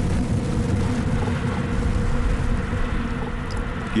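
A steady deep rumble, a documentary sound-effect bed, with a faint low held tone running through it.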